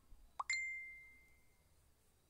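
Smartphone message-notification tone: a quick rising plop followed at once by a single bright ding that rings out and fades over about a second.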